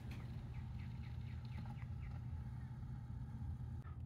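A low steady hum with a faint run of about eight short, falling high chirps, around four a second, in the first half.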